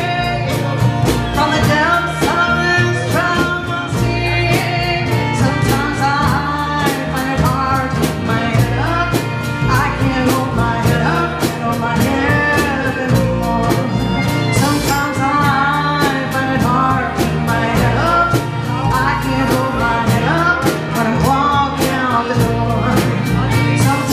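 Live blues-rock band: harmonica played into a microphone over drums, bass guitar and acoustic guitar, with a steady beat.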